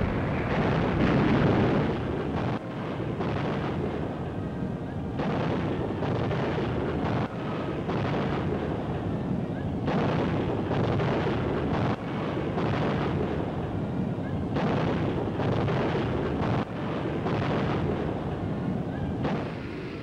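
Steady din of battle: explosions and gunfire, with many sharp cracks in quick succession.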